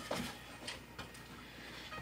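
Faint knocks and rustling of a pair of ankle boots being set back on a low closet shelf, a few soft taps in the first second.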